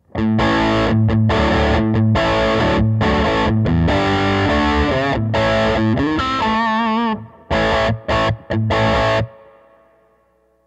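PRS 513 electric guitar played through a Mesa/Boogie Throttle Box distortion pedal, on its low-gain side, into a Fender Princeton Reverb amp. It plays a chunky distorted rhythm riff of chopped chords, then holds a note with vibrato, then hits a few short stabs. The last chord rings out and fades.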